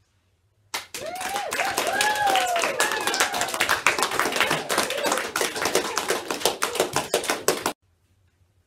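Children clapping, with voices calling out over the applause; it starts about a second in and cuts off suddenly near the end.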